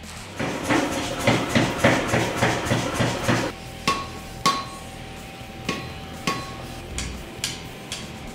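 Hammer blows on hot iron over an anvil in a blacksmith's forge. In the first few seconds there is a quick, dense run of strikes. From the middle on come separate blows, each with a short metallic ring.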